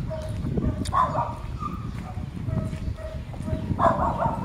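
A dog barking and yipping, with two louder barks about a second in and near the end, over the low rumble of footsteps and the phone being handled while walking.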